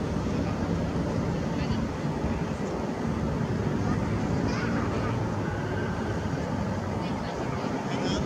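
Indistinct background voices of people over a steady low rumble.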